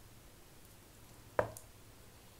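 Quiet room tone with a single short knock about one and a half seconds in, from the e-liquid bottle or vape mod being handled.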